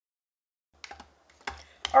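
Silence, then a few light clicks and knocks from a spoon stirring partly melted chocolate in a small electric chocolate-melter pot.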